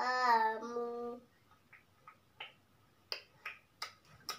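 A young girl singing a short phrase that ends about a second in, followed by a few light, sharp taps.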